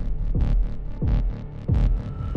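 Trailer sound design: a run of deep pulses, about three a second, each a sharp hit followed by a low tone that drops in pitch.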